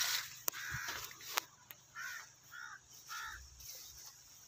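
A crow cawing in the open: a harsher call at the start, then three short caws evenly spaced about half a second apart.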